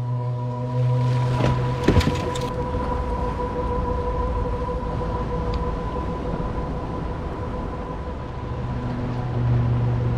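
Small boat's motor running steadily under wind and water wash, with a steady whine throughout and a low hum that fades out after the first second or so and returns near the end. A short sharp clatter comes about two seconds in.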